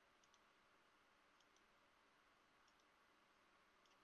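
Near silence with faint computer mouse clicks, coming in close pairs about once a second.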